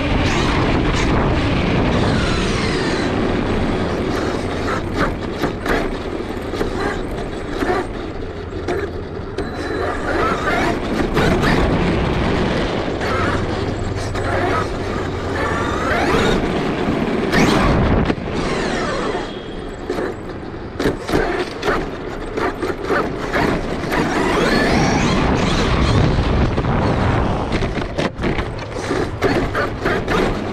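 Onboard sound of a Traxxas E-Revo 2.0 electric RC monster truck running fast over city pavement. The motor and gears whine, rising and falling in pitch as it speeds up and slows down, over tyre rumble and frequent rattling clicks.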